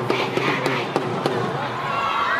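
A cheering section of schoolgirls chanting and shouting together over sharp drum strikes. The chant and drumming die away about one and a half seconds in.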